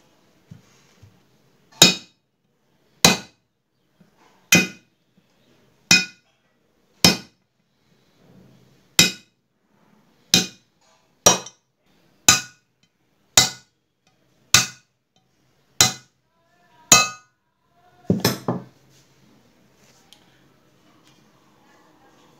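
Hammer blows on a steel drift, knocking a ball bearing out of a motorcycle's aluminium crankcase half. There are about thirteen sharp, ringing metallic strikes, roughly one a second, then a brief clatter near the end.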